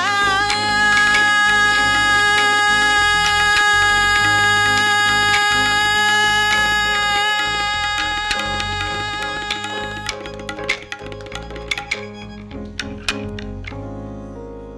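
A Carnatic vocalist holds one long sung note in raga Vasanta for about ten seconds, over tabla strokes, bass guitar and keyboard. The note stops about ten seconds in, and a few scattered tabla strokes follow as the music fades out at the end of the piece.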